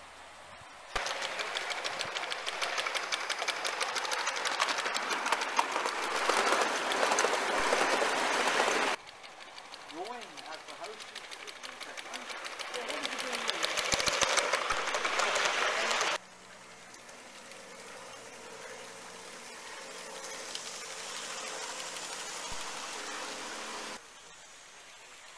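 Gauge One model trains running on garden track: a fast, even clatter of wheels over the rails. It is loudest in the first part and drops suddenly in level twice.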